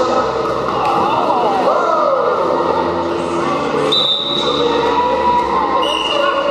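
Roller derby bout in a sports hall: many voices shouting over background music, with quad skates rolling and thudding on the wooden court. A short, high referee's whistle note sounds about four seconds in.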